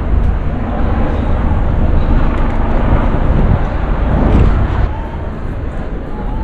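Steady, low rumbling noise of an outdoor city street, with a brief swell about four seconds in.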